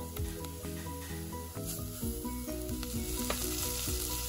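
Sliced onions and spice masala sizzling in hot oil in a nonstick pan, stirred and scraped with a wooden spatula, with a couple of short scrapes standing out.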